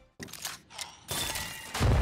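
Edited-in transition sound effect: a few faint clicks, then a loud noisy rush about a second in, ending in a deep boom near the end.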